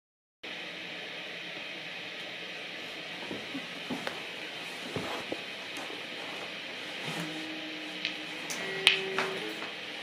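Steady hiss from an idling Alamo Fury tube guitar amp, with a few soft knocks as a guitar is handled. In the second half faint guitar notes ring through the amp, with a couple of pick or string clicks.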